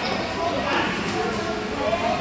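Indistinct chatter of children and adults echoing in a large hall.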